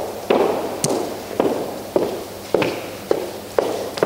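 Footsteps on a hard floor, a sharp knock about every half second, echoing in a large room as a person walks up to a lectern.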